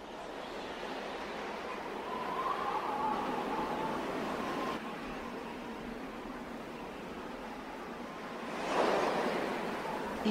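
A steady rushing noise, like wind, fading in at the start, with a faint wavering tone about two to four seconds in and a swell just before the end.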